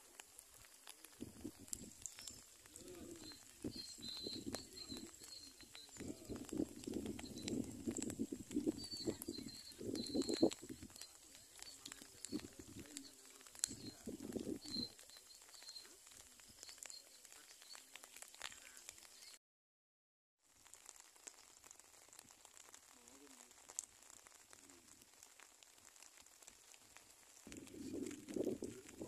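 Faint outdoor ambience with birds calling, busier in the first half, then quieter.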